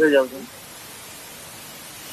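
A man's voice briefly at the start, then a steady background hiss.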